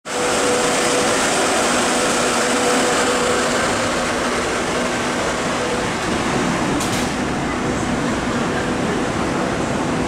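MTR C-Train electric multiple unit running through an underground station at close range: a steady, loud rail and running noise with a faint steady motor hum. There is one short click about seven seconds in.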